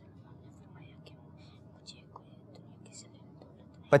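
Faint whispering of several boys conferring closely together over an answer.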